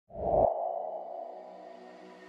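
Intro sound effect: a deep hit at the start that rings on as a steady, sonar-like tone, slowly fading.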